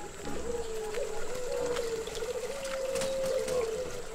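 Zebra doves (perkutut) cooing from the surrounding cages, heard as a low, drawn-out, wavering tone that shifts slightly in pitch, with a few faint clicks.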